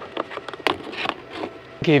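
Access cover being lifted off the EP Cube inverter compartment: a string of light, irregular clicks and scrapes over about a second and a half.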